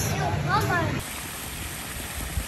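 High children's voices chattering for about a second, then a sudden change to the steady rush of a fountain's water jet splashing.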